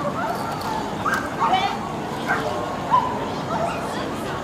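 Dogs barking and yipping in short, scattered calls over a murmur of voices.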